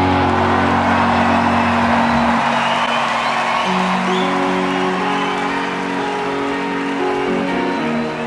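Electric guitars in a live rock band's outro hold sustained, ringing notes that shift to new pitches every second or two, over a haze of crowd noise.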